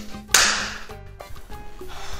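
A sharp swoosh sound effect strikes about a third of a second in and fades over about half a second, over background music with steady low notes.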